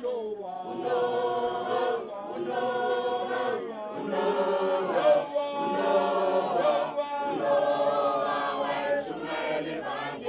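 A group of school students singing together unaccompanied, many voices in unison, in phrases a couple of seconds long.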